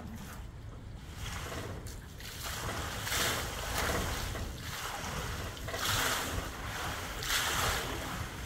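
Water sloshing and splashing in a metal stock tank as a tiger settles down into it, coming in several surges as the water washes over the rim. A low rumble of wind on the microphone runs underneath.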